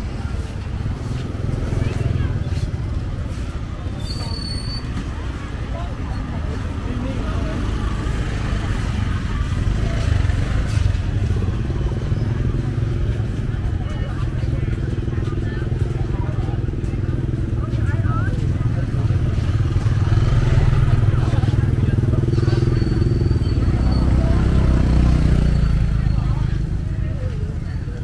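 Busy street market ambience: small motor scooters running and passing close by, their engine hum swelling over the second half, with people talking among the stalls.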